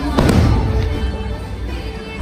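An aerial firework shell bursting with one loud bang about a fifth of a second in, its rumble trailing off over the next half second, over steady show music.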